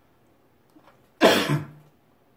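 A person coughing once, sudden and loud, a little over a second in, lasting under a second.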